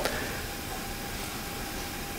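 Steady background hiss of a hall's room noise picked up through the podium microphone, with a faint steady hum, during a pause in speech.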